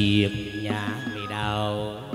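Chầu văn ritual music for a hầu đồng rite: held, gliding melodic notes over a steady low drone.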